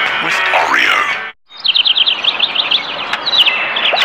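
Effect-processed commercial soundtrack: distorted voice and music for about the first second, a brief cut-out, then a fast run of high, downward-sweeping bird-like chirps, about eight to ten a second, with a few slower chirps near the end.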